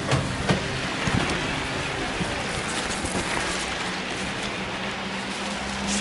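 Steady rain and wet-street background noise, with a few handling knocks in the first second or so.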